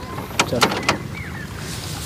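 Kubota SPV-6MD rice transplanter's engine idling with an even low pulse, with a few short clicks about half a second to one second in, then getting louder and rougher as it speeds up near the end.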